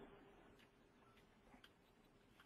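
Near silence on the webinar audio line, with two faint short clicks about one and a half seconds in.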